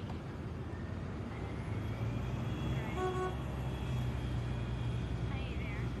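Street traffic noise: a steady low rumble of passing vehicles, with a short car horn toot about three seconds in.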